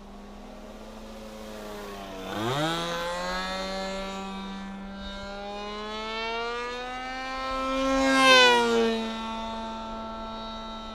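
Small propeller aircraft's engine flying overhead. About two seconds in the throttle opens and the pitch rises sharply. It grows louder as it comes closer, is loudest near the end, and then drops in pitch as it passes by.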